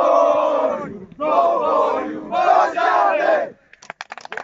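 A team of young men chanting together in a victory huddle: three loud shouted phrases in unison, breaking off about three and a half seconds in, followed by a few sharp smacks near the end.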